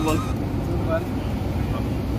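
Steady low rumble of outdoor background noise, with a faint brief voice-like sound about a second in.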